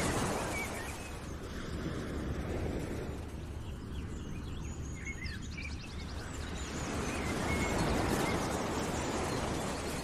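Outdoor nature ambience used as background: a rushing noise that swells and fades, louder near the start and again about eight seconds in, with a few short bird chirps in the middle.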